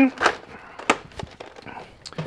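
Plastic toy blaster being handled and pulled off its shoulder mount: rustling handling noise with a sharp click about a second in and a few fainter clicks after.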